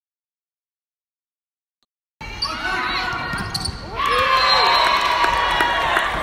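Silent for about two seconds, then the sound of a volleyball match in a gymnasium starts abruptly: crowd voices and shouts in a large echoing hall, with short sharp knocks from the court.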